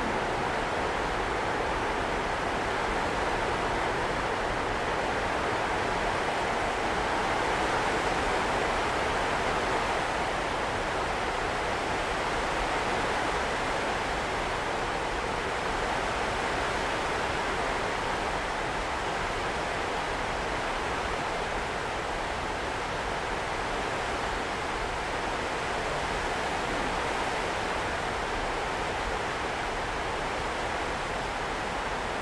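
Steady hiss-like noise, even and unbroken, with no speech or other distinct events.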